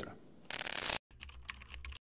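Keyboard typing sound effect, rapid key clicks that go with on-screen text being typed out letter by letter. A short burst of hiss comes about half a second in, then a brief gap before the clicking resumes.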